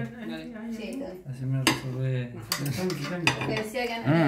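A metal fork clinking and scraping on a glass dinner plate, with a few sharp clinks.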